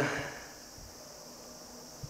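The tail of a man's spoken word fades out. After it comes a faint, steady, high-pitched hiss of background room tone, with nothing else happening.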